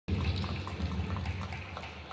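Indoor arena ambience at a badminton match: a low rumble of the hall and crowd, with scattered faint short squeaks, fading down over the two seconds.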